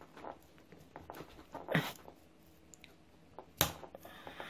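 Faint handling sounds as braided fishing line and a shock leader joined by an FG knot are pulled hard between their two spools, with a few soft rubs and one short, sharper sound near the end; the knot holds.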